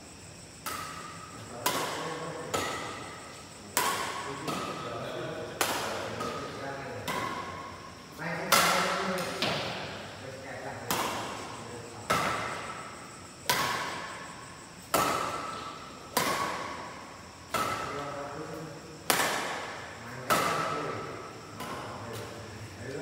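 Badminton rally: rackets striking a shuttlecock back and forth, about one hit every second and a half, some fifteen hits in all. Each hit is a sharp string crack that echoes and dies away in the bare hall.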